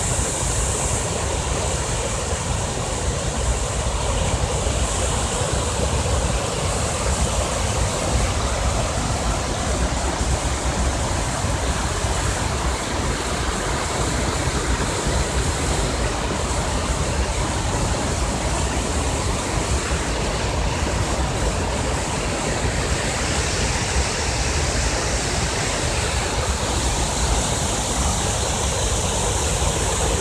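Rain-swollen river water pouring over a dam and rushing through the fish ladder channel: a steady, full roar of white water with no breaks.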